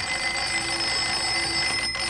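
A mechanical twin-bell alarm clock ringing steadily, with a short knock just before the end.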